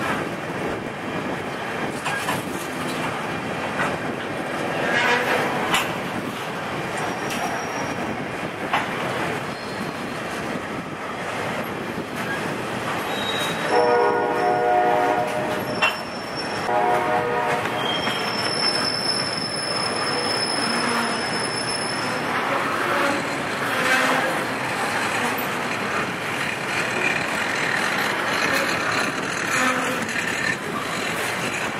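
CSX welded-rail freight train rolling past with a steady rumble and clatter of wheels on track. About midway there are two horn blasts, a longer one and then a shorter one. A thin, high-pitched wheel squeal follows for a few seconds as the train moves through the connection onto the B&O line.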